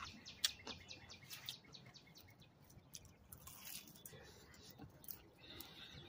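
Quiet eating sounds: scattered faint clicks of chewing and lip smacking close to the microphone, with birds chirping faintly in the background.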